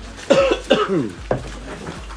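Short, loud vocal outbursts from a person, three in quick succession, each starting sharply and dropping in pitch; the first two are the loudest, the third is shorter.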